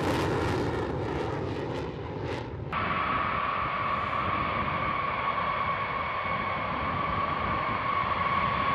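F-16 fighter jet running at full power with its afterburner lit, a loud rushing noise that swells and fades several times. A little under three seconds in it cuts sharply to the steady whine of B-52 bombers' jet engines on the runway: one high, unchanging tone over a low rumble.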